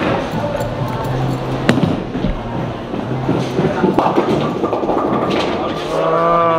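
A bowling ball hitting the wooden lane with a sharp knock as it is released, then rolling down the lane, with a second sharp knock about a second and a half later.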